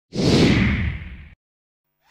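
Whoosh sound effect: a hiss over a deep rumble. It swells quickly, fades, and cuts off abruptly just over a second in.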